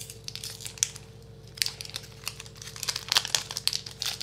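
Plastic trading-card pack wrapper crinkling as hands pull it open, a few scattered crackles at first, then thicker, busier crinkling through the second half.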